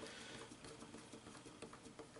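Faint light ticks and scraping of a small screwdriver turning the tiny holding screw on a Tortoise switch machine's pivot adjuster, clamping the piano-wire throw wire, over quiet room tone.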